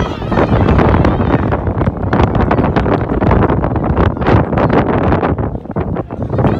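Wind blowing across the microphone, a loud, irregular rumble, with faint voices from the pitch underneath.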